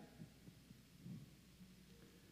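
Near silence: room tone with a faint steady low hum.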